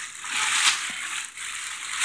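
Clear plastic bag crinkling continuously as the juicer wrapped in it is lifted out of its packaging and handled.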